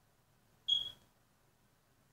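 One short, high-pitched squeak just under a second in.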